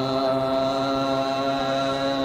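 Hindustani classical vocal music: a singer holds one long note at a steady pitch.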